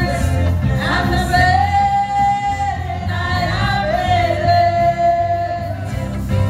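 A woman singing a gospel worship song into a microphone over a live band with electric guitar and bass, heard through the PA. She holds two long notes, one starting about a second in and another about four seconds in.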